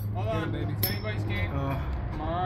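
Two metal Beyblade tops spinning down together in the middle of a plastic stadium, whirring with a couple of light clinks as they knock against each other about a second in. Voices are heard faintly behind.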